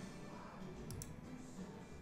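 Two faint, quick clicks at a computer about a second in, over quiet room tone.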